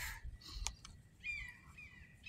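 Faint outdoor birdsong: a run of short, high, falling chirps starting a little over a second in, with a single click just before them.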